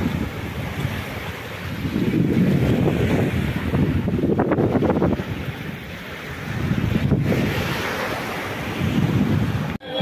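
Small waves breaking and washing up onto a sandy shore, with wind buffeting the microphone in gusts that swell twice.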